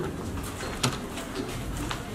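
A dove cooing in the background, with two sharp clicks, one a little under a second in and one near the end.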